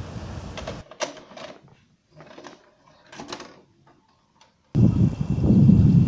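Sound effect of a VHS cassette being loaded into a video cassette recorder: a few separate mechanical clicks and clunks over otherwise dead silence, cut off suddenly near the end by outdoor microphone rumble.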